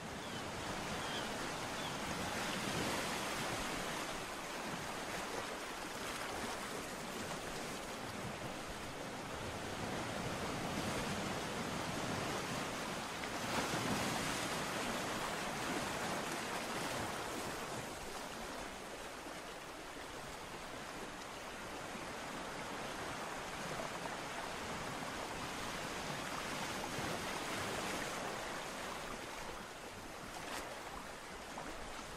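Waterside outdoor ambience: a steady rush of wind and waves with no tune or voice. It swells and eases slowly over several seconds at a time.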